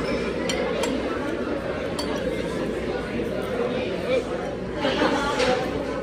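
Busy restaurant dining room: a steady hubbub of overlapping background chatter, with a few sharp clinks of dishes and cutlery.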